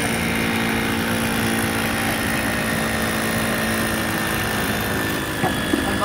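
A motor or engine running steadily at one constant speed, a fixed-pitch drone with no revving, that eases off shortly before the end.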